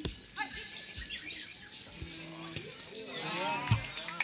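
Soccer players shouting and calling to each other during an attack on goal. A rising shout builds near the end, with a sharp thump just before it stops.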